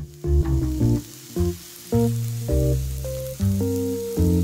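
Beef, onion and kimchi sizzling on a hot tabletop grill plate, a steady hiss, with background music playing over it.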